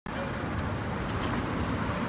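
Steady road traffic noise from passing vehicles.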